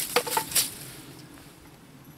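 A few quick wooden knocks and clinks in the first half second: a board and cordless drill being handled against a wooden pallet. After that only faint background.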